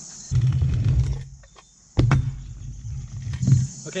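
Stunt scooter wheels rolling and rumbling on a ramp surface. The sound stops for about half a second while the scooter is in the air for a trick, then lands with a sharp clack about two seconds in and rolls on.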